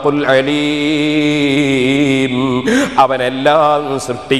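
A man's voice chanting a Quranic verse in melodic recitation, holding one long wavering note for about two seconds before a few shorter sung phrases.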